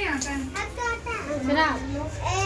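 A group of young children chattering and calling out, several high voices overlapping.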